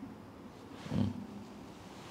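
A pause in a man's talk into a microphone: quiet room tone, with one brief low throaty vocal sound from him about a second in.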